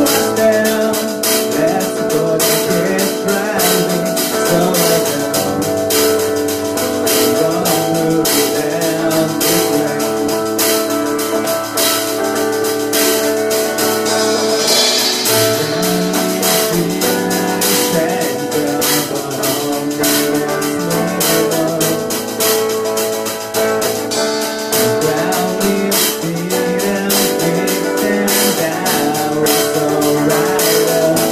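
Live cover of a song by a small band: strummed acoustic guitar, electric guitar and a drum kit keeping a steady beat, with a male voice singing over them.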